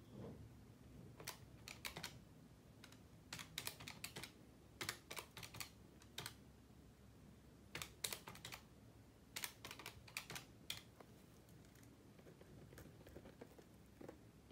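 Desktop calculator keys being tapped in several quick runs of sharp clicks.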